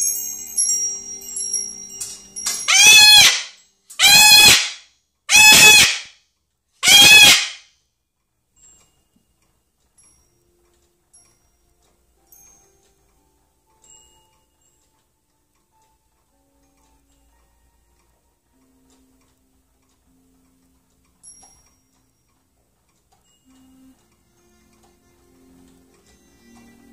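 A Moluccan cockatoo screaming: four loud calls, each about half a second long and arching up then down in pitch, spaced a little over a second apart. These are the screams of a grumpy, discontented bird. Before them, a metal wind chime's ringing fades out in the first couple of seconds.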